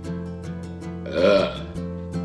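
A person lets out one loud burp about a second in, over strummed acoustic guitar background music.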